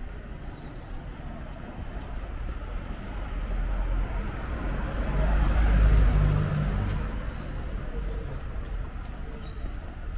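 A car passing along the street, growing louder to a peak about six seconds in and then fading away, over a steady hum of town traffic.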